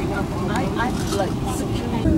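Low rumble of an airliner cabin on the ground, with indistinct passenger chatter over it.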